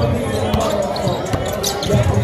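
A basketball being dribbled on a hardwood gym floor, several sharp bounces over background crowd voices.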